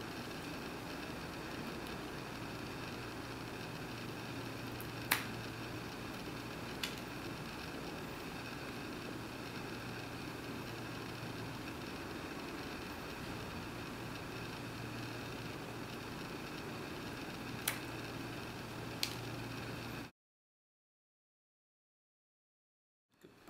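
Scissor-type pet nail clippers snipping a cat's claws: four short, sharp clicks, the loudest about five seconds in, over a steady low room hum.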